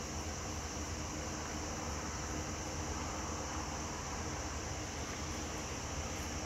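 Steady outdoor background: a constant high hiss over a low rumble, with no distinct sounds standing out.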